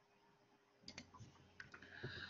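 Near silence, then a few faint, scattered clicks starting about a second in.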